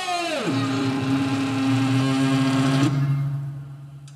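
A live band's closing sound: several tones slide steeply down in pitch together, then settle into held low notes. The upper note stops about three seconds in and the lowest fades away as the piece ends.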